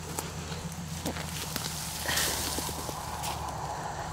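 Footsteps on a wood-chip mulch path with leaves brushing, a short burst of rustling about two seconds in, over a steady low hum.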